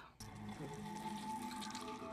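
Thick gruel slopping and pouring into a bowl, a steady wet liquid sound, over a faint steady background tone.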